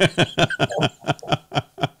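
A man laughing: a quick run of short chuckles, about six a second, dying away near the end.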